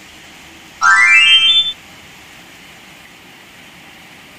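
Heavy rain falling steadily, with a loud, short rising electronic tone about a second in.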